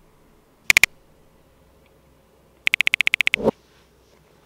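Sharp clicks: a quick triple click about a second in, then a fast, even run of about a dozen clicks near the end, closed by a dull thump.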